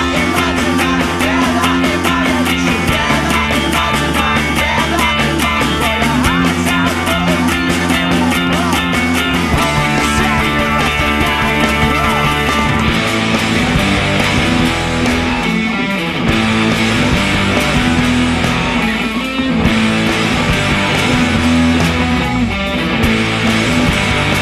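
Two overdubbed electric guitar parts on a Fender Road Worn '50s Stratocaster, played through a Line 6 POD HD500, over a fast indie-rock backing with drums. The drum pattern thins out about halfway through, and there are a couple of brief stops near the end.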